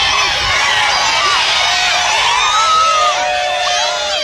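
A crowd of fans shouting and cheering at once, many high voices overlapping, with a few long held shouts rising out of it near the end.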